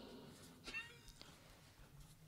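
Near silence: room tone, with one faint, brief high-pitched sound about two-thirds of a second in.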